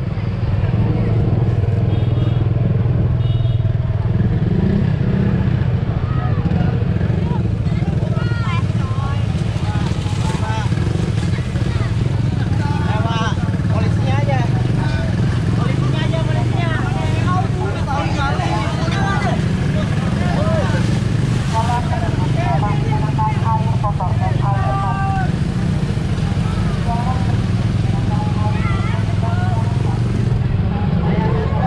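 Motorcycle engine and road rumble running steadily, with many people's voices calling and shouting around it, busiest through the middle.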